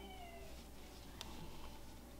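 A faint cry falling in pitch, like an animal's, fading out about half a second in, over a low steady hum.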